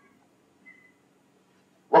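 Near silence: room tone of a lecture hall with a faint low hum, and one brief, faint high-pitched squeak a little under a second in.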